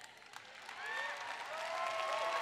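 Large audience starting to applaud, building up about half a second in, with a few voices calling out over the clapping.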